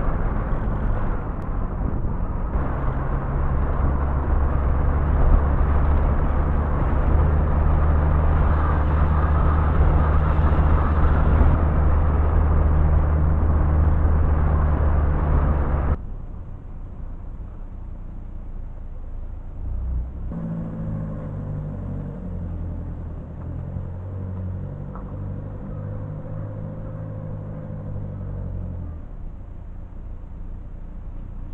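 Vehicle driving along a road, heard from on board: steady engine hum with road and wind noise. About sixteen seconds in, the sound cuts abruptly to a quieter engine whose pitch shifts up and down in steps.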